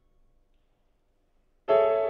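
Near silence, then near the end a loud piano chord struck suddenly and left ringing.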